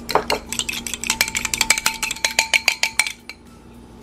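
A metal fork beating an egg and water in a small ceramic bowl: a fast, even run of clinks against the bowl's side, about ten a second, with the bowl ringing faintly under them. The beating stops about three seconds in.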